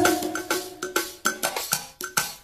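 Percussion break in a karaoke backing track: about ten sharp, ringing metallic strikes in an uneven rhythm, like a cowbell, just after a sung note ends.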